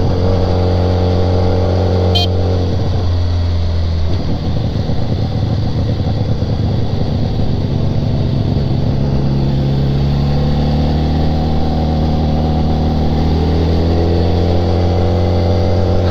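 BMW sport bike engine running under way, heard over wind noise. Its pitch drops about two to four seconds in, then holds low and climbs slowly through the second half as the bike picks up speed.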